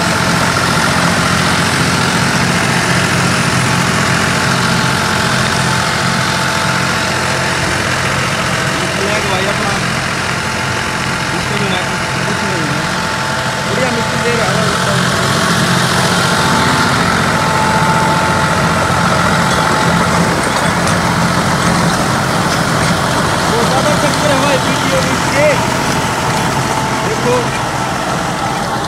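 John Deere 5310 tractor's three-cylinder diesel engine running steadily as it pulls an eight-foot rotavator, whose blades are churning the soil.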